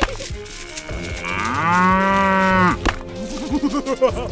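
A cow mooing: one long moo lasting about a second and a half, sliding up in pitch as it starts and dropping away as it ends.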